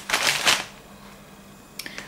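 Grocery packaging rustling and crinkling as it is handled and set down on a table, a short burst of about half a second, followed by a brief faint rustle near the end.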